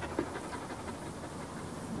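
A dog panting in quick, even breaths, with one short knock a fraction of a second in.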